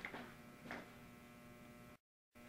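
Near silence: room tone with a steady low electrical hum, and two faint brief noises, one just after the start and one under a second in.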